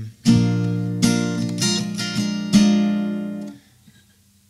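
Acoustic guitar strummed: about five strums of an A-sharp barre chord moving to A-sharp seventh, ringing between strokes. The chord is cut off about three and a half seconds in.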